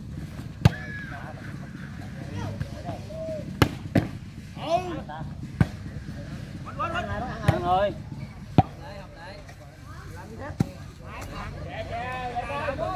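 A ball being struck again and again during a rally over a net: about eight sharp smacks at irregular intervals, the loudest near the start and in the second half. Spectators shout and chatter in the background.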